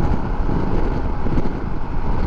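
Wind rushing over the microphone with the steady drone of a 2021 Harley-Davidson Pan America Special and its tyres cruising at highway speed.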